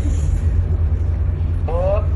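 A steady low hum with nothing else over it for most of the moment; a voice begins speaking near the end.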